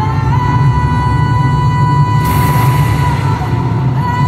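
Loud live rock music in an arena, recorded through a phone. A long held lead note bends up just after the start over heavy bass and drums, with a cymbal crash about two seconds in.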